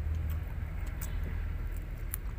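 A steady low rumble, strongest at the start, with a few faint sharp clicks as fingers peel open a rambutan's rind.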